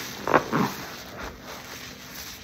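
Detergent-soaked car wash sponge squeezed by gloved hands over a bowl of suds, giving two loud squelches in quick succession near the start, then softer wet sounds of foam and liquid running out.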